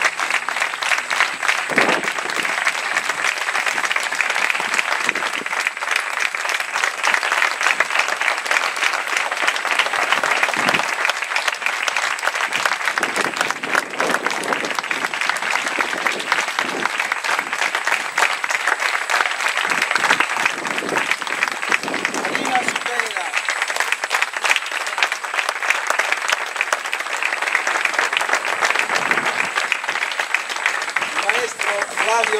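Audience applauding steadily, a dense patter of many hands clapping through a long ovation, with a few voices calling out in the crowd.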